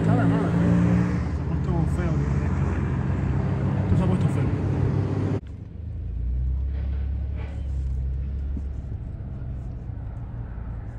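Road traffic: car engines running and passing by, with a man's voice laughing briefly near the start. About five seconds in it cuts off abruptly to a quieter, steady low rumble of distant traffic.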